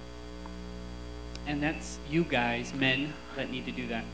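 Steady electrical mains hum from the sound system, with a man's voice coming in faintly from about a second and a half in.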